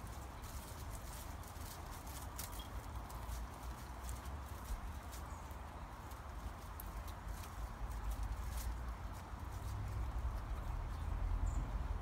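Scattered small clicks and crackles at an uneven pace, over a low, fluctuating rumble like wind on the microphone.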